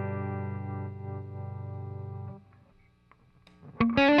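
Collings SoCo Gold Custom Standard semi-hollow electric guitar, amplified, letting a chord ring with a fast slight waver in its level. The chord is damped just past halfway, a brief near-silent gap follows, and fresh picked notes begin near the end.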